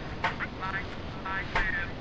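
Faint voice with no words made out, in short snatches, over a low steady rumble.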